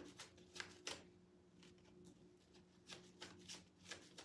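A deck of tarot cards being shuffled by hand: quiet, irregular slaps and swishes of cards, a few a second, with a short pause about a second in. A faint steady hum runs underneath.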